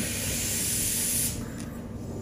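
A steady hiss that eases off about a second and a half in.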